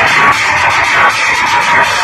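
Loud music played through a large outdoor DJ sound system, with a steady beat.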